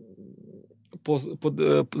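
Speech only: a man's voice holds a low, drawn-out hesitation sound for under a second, then speaks normally from about a second in.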